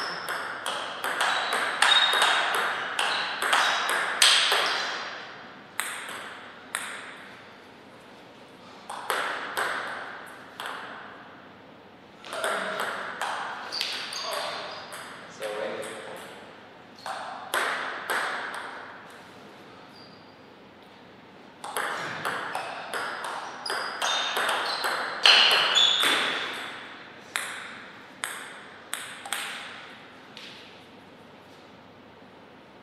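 Table tennis rallies: the celluloid ball clicking back and forth off the paddles and table in a quick, even beat, each click ringing briefly in the hall. About six rallies come in bursts of a few seconds, with short pauses between points.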